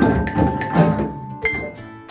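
Children's classroom percussion group playing wooden xylophones and hand drums together: several loud strikes about half a second apart, each followed by ringing notes from the bars.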